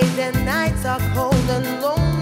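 Lovers reggae song with a woman singing over bass and drums, her voice wavering on held notes.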